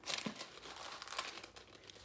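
Paper pages rustling and crinkling as a book is leafed through: a dense crackle, strongest in the first half second, thinning out after about a second and a half.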